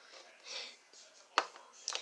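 Small plastic toy dolls being picked up and handled: a soft rustle, then two sharp clicks about half a second apart near the end as plastic taps plastic.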